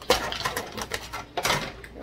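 Plastic food containers and a lid clattering and knocking against the wire dish rack of a small dishwasher as it is loaded. The sharpest knocks come just after the start and again about a second and a half in.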